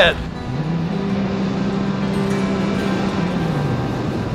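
Rescue jet ski engine revving up about half a second in, holding a steady pitch, then easing off near the end.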